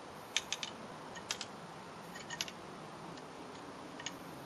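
Light metallic clicks in small clusters as silencer baffles are slid back into the air rifle's aluminium shroud.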